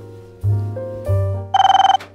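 Background piano music with a bass line. About one and a half seconds in, a wall-mounted intercom handset rings once: a loud, half-second electronic trill, a call coming through from the door.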